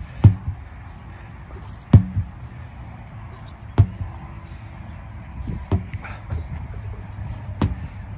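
Sledgehammer striking a tractor tire over and over: five heavy strikes about two seconds apart.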